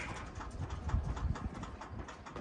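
Wind rumbling on the microphone, with scattered light taps and scrapes.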